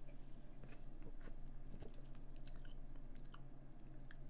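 A person sipping soda from a can and swallowing close to the microphone: faint gulps and small wet mouth clicks scattered through, over a steady low hum.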